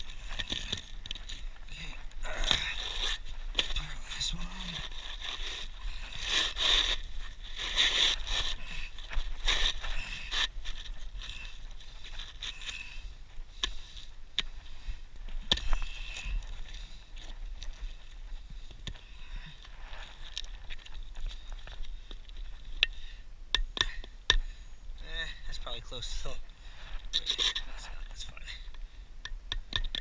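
Asphalt roof shingles being handled and worked by hand: irregular scraping, crunching and rustling of the gritty shingle surfaces, busiest in the first third.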